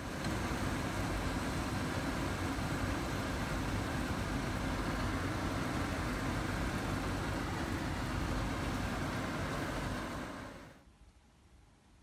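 Pot of water at a rolling boil: a steady bubbling rush that cuts off suddenly near the end.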